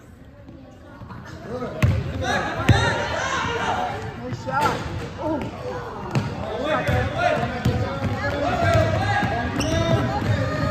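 Basketball bouncing on a hardwood gym floor, with sharp thuds about two seconds in and again shortly after, over the voices of players and onlookers.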